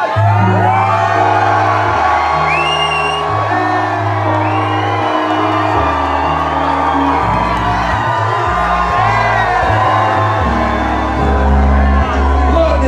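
A hip-hop beat plays loud through a concert PA, with a deep bass line stepping between notes. Crowd members whoop and shout over it.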